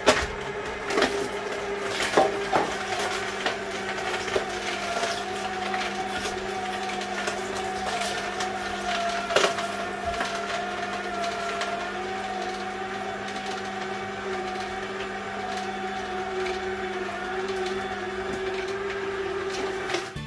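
Fridja vertical slow (masticating) juicer running with a steady motor hum as its auger grinds produce pushed down the chute. Sharp cracks and snaps from the crushing come near the start and once about nine seconds in.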